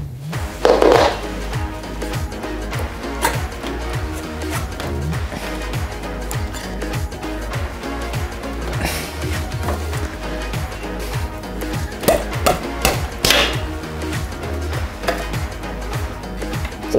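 Background music with a steady beat and bass line, with a few sharp clicks and knocks over it.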